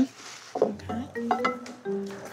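Light background music with plucked-string notes, coming in about a second in.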